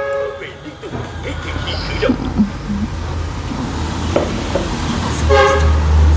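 Two short horn toots, one at the very start and another about five seconds in, over a low engine rumble that swells near the end.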